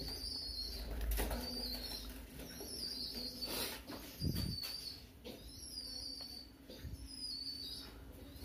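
Faint chirping of small birds, a short high call roughly once a second, over a low steady hum.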